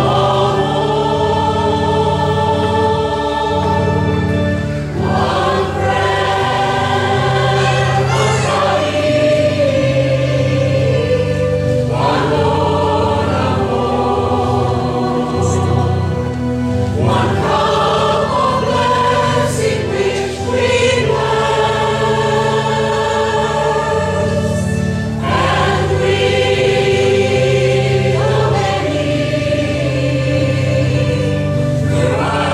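A choir singing a communion hymn in phrases a few seconds long, over sustained low accompanying chords.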